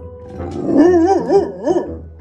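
A dog howling, its voice wavering up and down in pitch several times, for about a second and a half from about half a second in.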